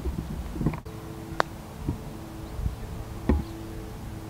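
Golf iron striking a ball on a short chip shot: a brief click, the louder of two, about three seconds in, after a lighter click earlier. A faint steady hum runs underneath.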